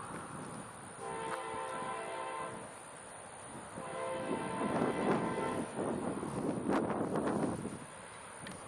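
Approaching freight locomotive's air horn sounding a chord: one long blast about a second in and a shorter one near the middle. A loud rushing noise follows for about three seconds before dropping away near the end.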